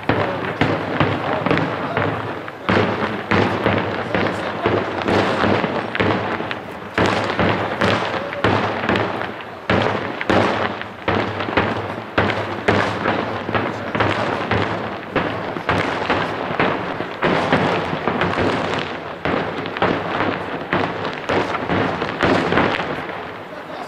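Daytime aerial fireworks bursting overhead in a dense, unbroken barrage of bangs and cracks, several a second.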